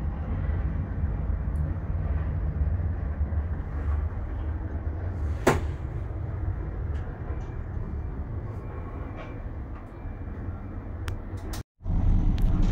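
Steady low rumble of a moving Emirates Air Line cable car cabin, with one sharp click about five and a half seconds in and a few faint ticks near the end.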